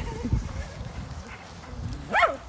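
Dogs playing on grass: low, uneven thuds and rustling, with a short faint vocal sound just after the start.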